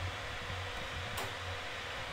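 Steady low background hiss of room tone between narration, with one faint click about a second in.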